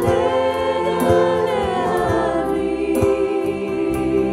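A live worship band playing: a woman and a man singing a Hebrew song, backed by acoustic guitar, bass guitar and electronic drums with a steady beat.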